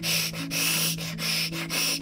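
A person hissing with the voice, in about five short breathy bursts: a feral creature's threatening hiss done by a voice actor.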